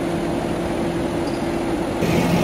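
Tractor diesel engine idling: a steady low hum with a constant whine over it.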